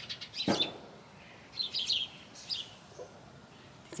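Birds calling: a few short, high chirps in quick succession about two seconds in, and another brief call shortly after.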